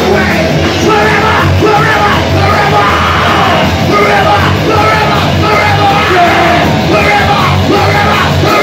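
Live rock band playing loud, with electric guitar, bass guitar and drums under a vocalist yelling the lyrics into a microphone.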